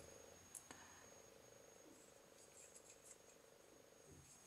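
Near silence: room tone with a faint steady hum and a couple of faint ticks about half a second in.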